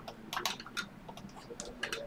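Scattered light clicks and taps, quiet and irregular, a few to the second.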